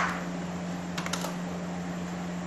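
Computer keyboard keystrokes: one sharp key press right at the start, the Enter key starting a new line of code, then a quick cluster of two or three key presses about a second in. A steady low hum runs underneath.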